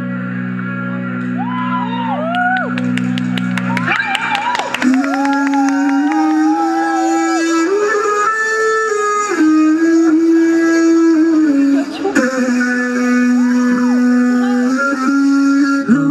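Live band music: a low chord held for the first four seconds, a quick run of ticks about three to four seconds in, then a wavering melody line over steady held tones.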